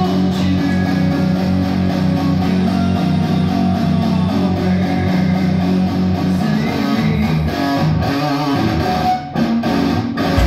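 Electric guitar played through a small combo amp, a rock riff with sustained low notes; the playing breaks off briefly about nine seconds in, then picks up again.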